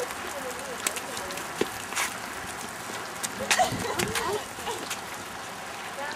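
Faint voices of people shouting at a distance over a steady background hiss, with a few sharp knocks.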